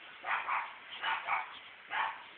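A pug giving about five short yips, mostly in quick pairs.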